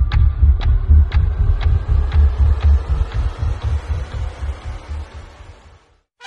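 Suspense sound design on the soundtrack: a low pulsing drone with a sharp tick about twice a second, like a clock, gradually fading out to silence at the very end.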